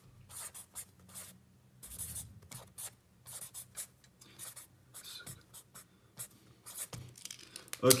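Ballpoint pen writing on notebook paper: a run of short, quiet pen strokes in quick bursts, pausing now and then between words.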